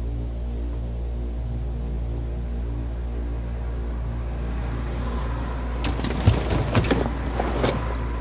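A low, steady drone of sustained suspense underscore. From about six seconds in, a run of sharp clicks and knocks sounds over it.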